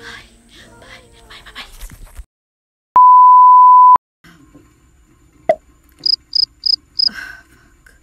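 A loud, steady electronic beep tone held for about a second, cutting in and out abruptly between moments of silence. Later, four short high-pitched beeps follow in quick succession, about three a second.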